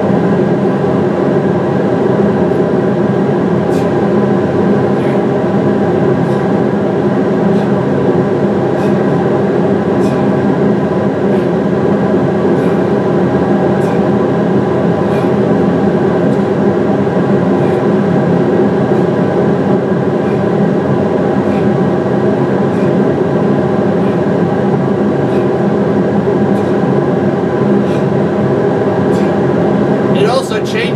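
A recording of two industrial fans played back as white noise: a loud, steady drone with a layered hum. Faint ticks come now and then.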